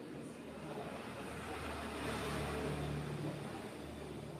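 Low rumble and hiss of a motor vehicle passing, swelling to its loudest about halfway through, then easing.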